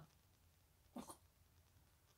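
Near silence: room tone, with one short, faint sound about a second in.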